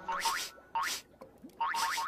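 Cartoon sound effects: three short rising, whistle-like glides in a row, over background music.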